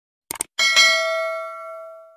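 Subscribe-button animation sound effect: a quick mouse click, then a bright notification-bell ding about half a second in that rings out and fades over about a second and a half.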